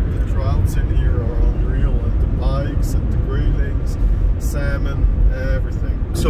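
Steady low road and engine rumble inside a moving car's cabin, with people's voices talking over it at times.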